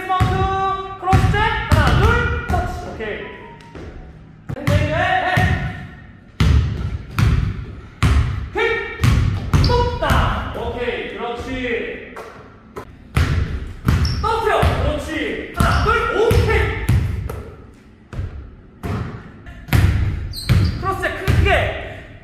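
Basketball dribbled hard on a hardwood gym floor: quick clusters of sharp bounces with short pauses between them, as dribble combinations are run.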